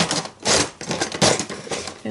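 Hands rummaging through craft supplies on a tabletop: a run of small objects clattering, knocking and rubbing together, loudest about half a second in and again just after a second.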